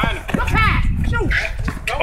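Scattered short calls and voices from players and onlookers, not steady talk, over a low rumble.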